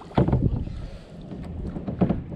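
Wind noise on the microphone, a low steady rumble, with light water and hull sounds from a kayak on choppy lake water. A single short spoken word comes at the start.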